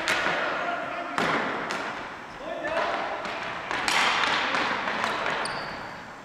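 Ball hockey play on a gym floor: sticks striking the ball and clacking on the hard floor, sharp knocks that echo in the large hall, a few in quick succession, with brief shoe squeaks near the end.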